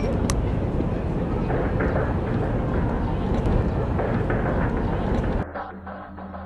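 Steady city park background noise: a low rumble of traffic with passers-by and a general outdoor hubbub. About five and a half seconds in, the sound drops and goes muffled for about a second.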